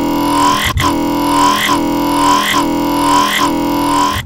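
Serum software synthesizer growl bass on the Creeper wavetable: a held note with a vowel-like tone that sweeps over and over, a little under once a second, as an LFO moves the wavetable position and the mirror warp. It is an early, still rough stage of a dubstep growl patch, before unison and filtering are added.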